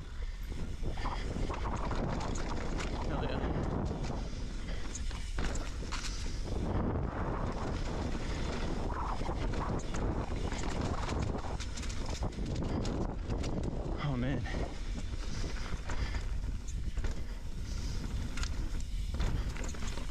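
Mountain bike riding down a rocky dirt trail: knobby tyres rolling over dirt, rock slabs and dry leaves, with frequent clicks and knocks from the bike rattling over bumps, heard through a chin-mounted action camera with wind on its microphone.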